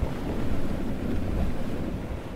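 Sound effect of a rough sea with wind: a dense rushing, rumbling noise that swells a little in the middle.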